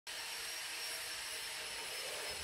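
Steady background hiss with a few faint high-pitched tones, and no distinct event.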